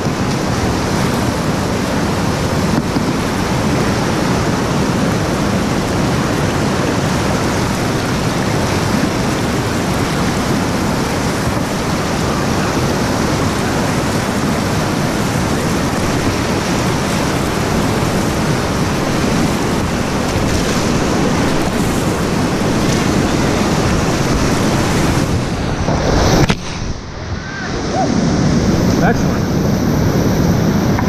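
Loud, steady rush of whitewater rapids heard from a kayak in the current. About 26 seconds in, the sound suddenly goes muffled for a second or two as water washes over the helmet camera at the falls, then the rushing returns.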